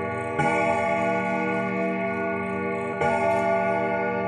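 Grandfather clock chimes played back from a recording: two deep, ringing strikes, about half a second in and about three seconds in, each sounding over the ring of the one before.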